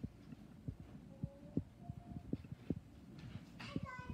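A girl's voice playing very faintly through laptop speakers, mostly lost under scattered soft low thumps; the playback volume is too low.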